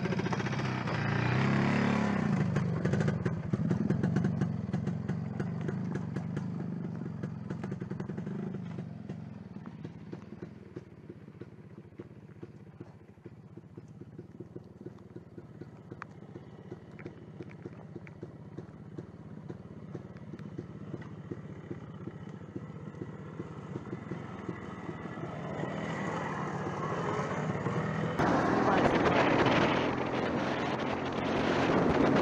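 Motorcycle engine running, heard from the bike: louder at first, then lower and quieter in the middle. Near the end it rises again with rushing wind noise as the bike speeds up.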